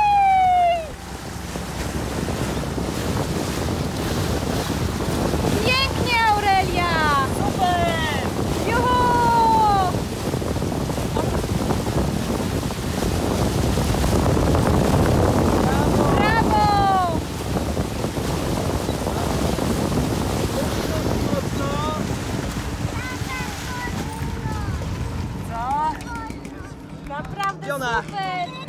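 Motorboat under way towing a water-skier: water rushing and splashing along the hull and skis, with wind on the microphone. Voices call out several times. Near the end the noise drops as the boat comes to a stop.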